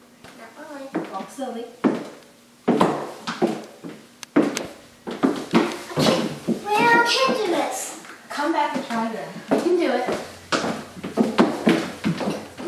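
A girl's voice talking, high-pitched at times, with the clicks of heeled shoes on a hardwood floor.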